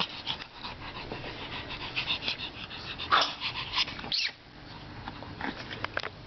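A Pekingese dog breathing noisily close up in quick short sniffs and breaths, with louder bursts about three and four seconds in, then quieter.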